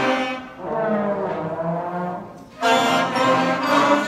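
Elementary school concert band playing held chords, with trombones among the woodwinds and brass. After a softer passage, a loud full-band chord comes in about two and a half seconds in.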